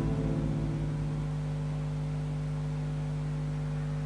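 The karaoke backing track's closing chord fading over about a second into a steady held low tone with a few overtones; no singing.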